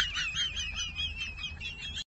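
A high-pitched, warbling chirping call that wavers rapidly up and down in pitch and sinks slightly over the two seconds.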